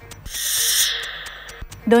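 A swishing transition sound effect: a hiss that swells about a third of a second in and fades away over about a second, with a faint low hum beneath.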